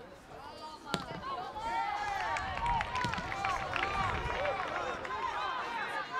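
Several voices shouting and calling over each other at a football match, with one sharp thud of a ball being kicked about a second in; the shouting swells shortly after and carries on until near the end.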